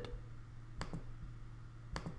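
Two computer mouse clicks, about a second apart, over a faint low hum.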